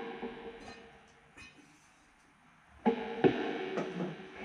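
Electric guitar played through an amplifier: a chord rings out and fades away, then after a quiet moment single notes and chords are picked again from about three seconds in.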